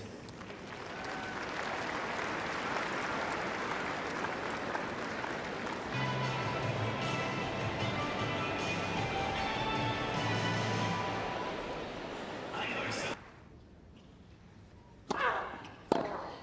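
Crowd applauding and cheering, with music playing over it for a few seconds in the middle. The noise cuts off suddenly to a quiet court, and near the end a racket strikes a tennis ball once, sharply.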